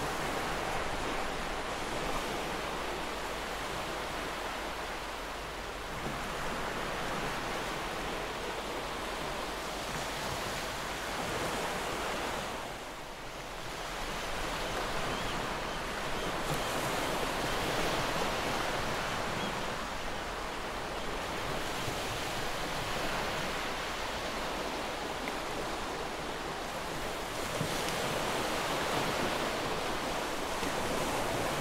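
Ocean surf: a steady rush of breaking waves that swells and eases slowly, with a brief lull near the middle.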